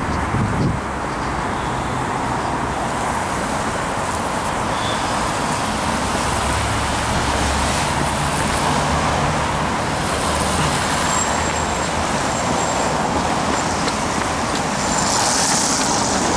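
Steady city street traffic noise: cars running past on a busy road, with a heavier vehicle's low engine hum passing through midway and a brief hiss near the end.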